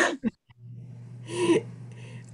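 A person's short, breathy gasp over a video-call microphone about one and a half seconds in, after the tail of a spoken word, with a steady low hum from the open microphone underneath.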